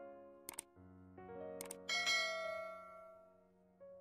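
Soft background piano music, with a subscribe-button sound effect laid over it: a quick click about half a second in, another about a second and a half in, then a bright bell ding that rings out and fades.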